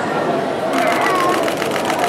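Crowd of visitors chattering, with a camera shutter firing a rapid burst of evenly spaced clicks, about nine a second, starting under a second in and lasting about a second and a half.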